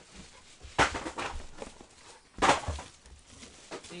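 Two short, sharp handling noises about a second and a half apart, the second the louder, with faint rustling between.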